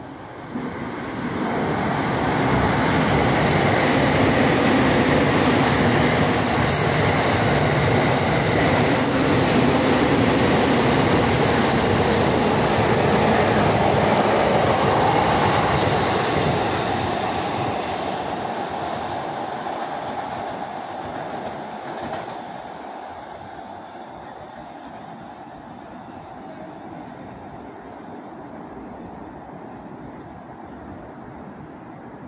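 An electric train running past close by: the rail and wheel noise rises sharply in the first couple of seconds, stays loud for about fifteen seconds, then fades away.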